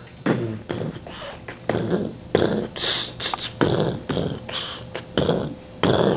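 A person beatboxing: short mouth-made bass thumps and hissing snare-like bursts, about two a second, in an uneven rhythm.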